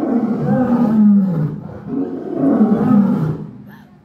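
A lion roaring in two long, deep calls. Each call slides down in pitch, and the second fades away near the end.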